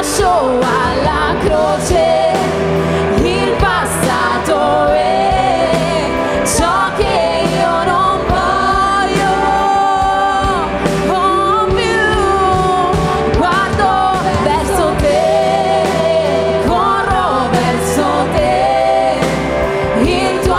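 Live worship band playing an Italian worship song: women singing the melody together, lead and backing vocals, over electric bass guitar and keyboard.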